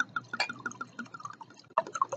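Red wine being poured from a bottle into a glass, glugging in a quick, even run of short pops.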